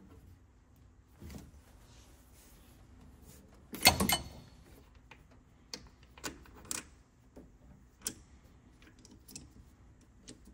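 Metal wrench and hose fitting clinking and knocking as the oil cooler line is loosened and pulled off by hand: scattered light clicks, with one louder clatter about four seconds in.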